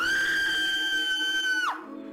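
A high-pitched scream, sliding up at the start, held for about a second and a half and then dropping away, over background music.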